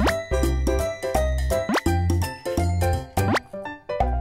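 Background music with a pulsing bass line and a short rising swoop sound three times, about every second and a half.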